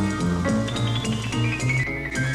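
Jazz piano playing in a small band, with drums behind it; a high line of notes falls in pitch near the end.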